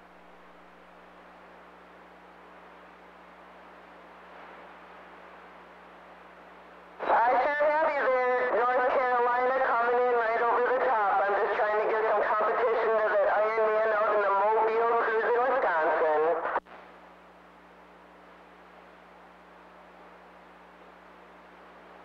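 CB radio receiver hissing with static and a faint hum, then for about ten seconds a distant station's voice transmission comes through loud but garbled, with no clear words, until the carrier drops off abruptly and the static returns.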